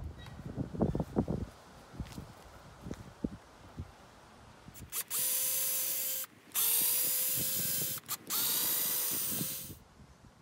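Cordless drill/driver backing screws out of the sides of a wooden concrete-countertop form, heard as three runs of steady motor whine, each about a second and a half long with short pauses between, starting about five seconds in. Before that come a few light knocks.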